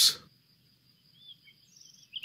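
A pause in narration: near silence with a faint steady high tone and a few faint, short chirps in the second half.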